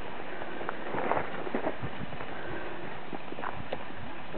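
Irregular steps of sheep hooves and human feet on a dirt-and-gravel road: short, uneven scuffs and taps with no steady rhythm.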